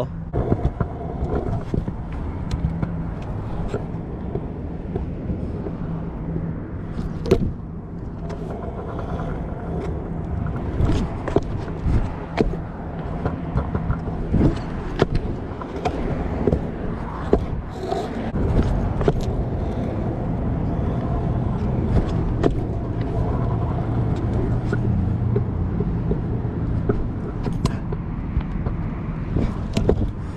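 Pro scooter wheels rolling over asphalt and concrete, a continuous rumble broken by frequent sharp clicks and knocks.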